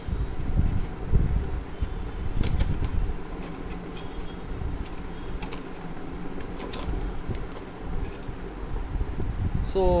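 Handling noise from opening a cardboard box and taking out a small Bluetooth speaker. Dull thumps and rustling are heaviest in the first three seconds, then quieter handling with a few sharp clicks.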